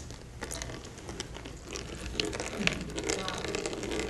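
Irregular light clicks and taps from handling a long water-filled tube with a test tube in its open end as the tube is turned upside down.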